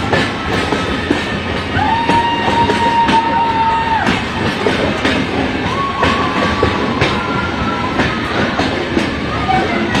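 Passenger express train running on the track: a steady loud rushing rumble with repeated clicks of the wheels over the rails. Two long steady high tones sound over it, one about two seconds in lasting about two seconds, and a shorter one about six seconds in.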